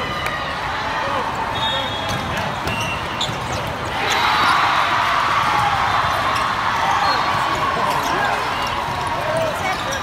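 Busy indoor volleyball hall: many voices and player calls, with the thuds of volleyballs being hit and bouncing on the courts, and short high referee whistles. The voices swell about four seconds in as a rally gets under way.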